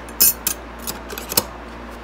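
A few short, sharp metallic clicks as a stainless steel survival card and its push dagger are handled and fitted together on a cloth-covered table.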